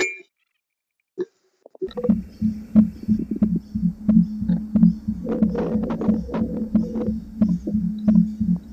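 Pulse-wave generator ('Little Thumpa' thumper) knocking in a buried plastic water line, picked up through an acoustic ground microphone and headset. After a moment of silence, a steady train of low thumps starts about two seconds in, several a second, with sharp clicks over it. This is the thump the locator listens for to trace where the pipe runs.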